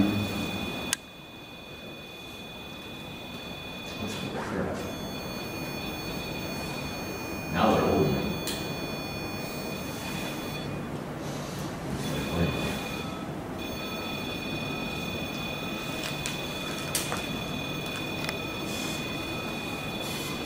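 Steady high-pitched electronic whine made of several tones, cutting out briefly a few times, over a low noise floor, with a sharp click about a second in and a few short murmurs or rustles.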